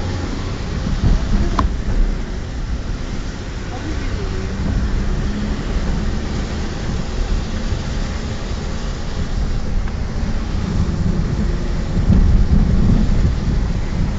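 Steady low rumble of a car's engine and road noise heard from inside the moving vehicle, swelling louder near the end, with a single sharp click about a second and a half in.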